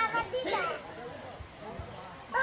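Children's voices chattering and calling, strongest in the first second and then dropping away.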